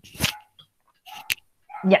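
A brief dog bark in the background, coming through a participant's microphone on the video call, followed by a single sharp click about a second later.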